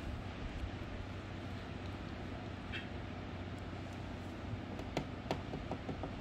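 A steady low background hum, with a brief high squeak about halfway and a few light clicks near the end.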